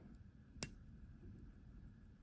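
Near silence with one short, sharp click a little over half a second in, from fingers handling a steel watch case while unscrewing its crown.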